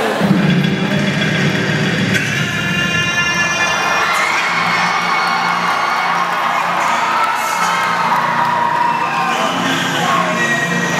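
Recorded song playing over a gym's sound system for a lip-sync dance, with a large student audience cheering and shouting over it.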